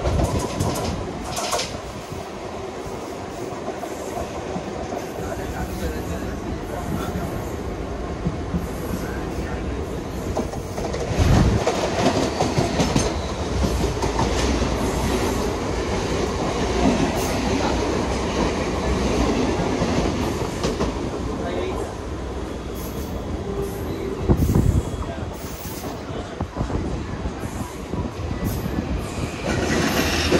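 Mumbai suburban electric local train running on the rails, heard from its open doorway: steady wheel-and-rail running noise with wind, and other trains passing on the next track. Two louder thumps come about eleven and twenty-four seconds in.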